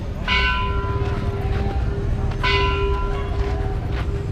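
A Buddhist temple bell struck twice, about two seconds apart, each stroke ringing out with several clear tones and fading. A steady low hum runs underneath.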